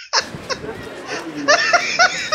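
People laughing, with short bits of voice, over steady street background noise that starts abruptly just after the beginning.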